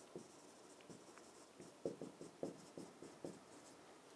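Faint, irregular short strokes of a stylus writing on a large touchscreen display.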